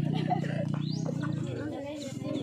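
People talking in the background over a steady low drone, which fades out about a second and a half in.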